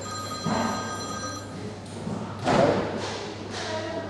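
A mobile phone ringtone sounds for about the first second and a half, signalling an incoming call. A louder thump comes about two and a half seconds in.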